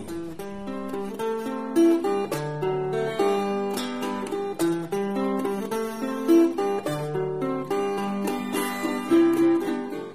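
Acoustic guitar playing an instrumental passage of picked notes that ring on, with no voice over it.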